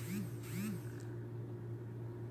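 Quiet room tone with a steady low electrical hum. A faint soft murmur of voice comes twice in the first second.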